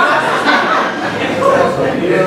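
Speech: several voices talking over one another around a council table.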